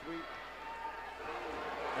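A commentator's voice, a word or two with pauses, over a faint steady murmur of an arena crowd.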